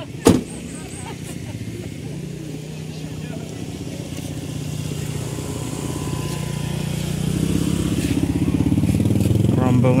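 A car door shuts with a single sharp bang just after the start. A motorcycle engine then runs close by, growing steadily louder as it comes alongside.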